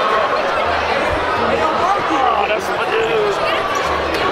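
Crowd chatter in a gymnasium: many voices talking at once, with no single speaker clear, as a steady indistinct hubbub.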